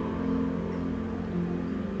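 Quiet background music: low sustained tones that shift slowly, over a faint hiss.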